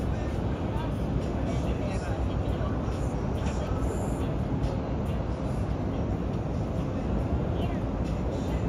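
Steady low rumble and hiss of outdoor ambient noise, with faint, indistinct voices in the background.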